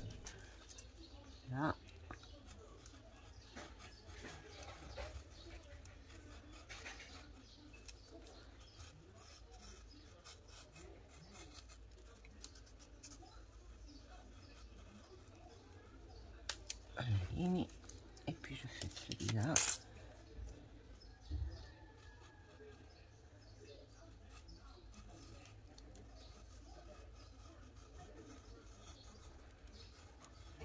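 Craft knife slicing slits through a sheet of paper: faint, scratchy cutting, with a few louder sudden knocks and a sharp click about two-thirds of the way in.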